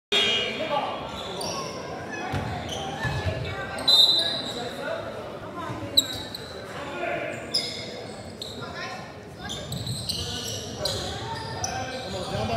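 Basketball being dribbled and bounced on a hardwood gym floor during play, with players and spectators calling out, all echoing in the large hall. Two sharper, louder hits stand out, about four and six seconds in.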